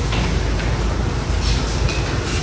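Steady low rumble and hiss of lecture-hall room noise, with no speech.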